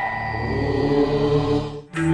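Broadcast title-jingle music: a held, chant-like vocal tone over a low sustained drone. It cuts off just before the end.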